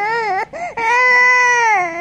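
Infant crying: a short wavering wail, a brief catch of breath, then a long, steady, high wail held for about a second.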